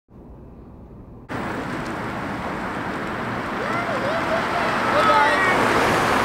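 Scooter wheels rolling over rough asphalt, with wind rushing over the microphone: a steady noisy rush that starts abruptly about a second in and slowly grows louder.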